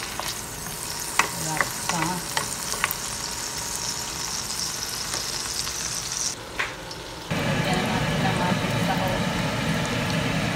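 Potato wedges and onions sizzling as they fry in oil in a nonstick pot, with a few sharp clicks of tongs against the pot as they are turned. About seven seconds in, the high sizzle stops and a louder, low steady rumble takes over.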